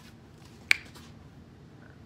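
A single sharp finger snap, about two-thirds of a second in, over quiet room tone.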